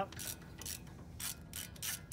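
Hand ratchet wrench clicking as it turns the sway bar end-link bolt on a Tacoma's front suspension: a quick, even run of clicks, about six a second, louder in the second half.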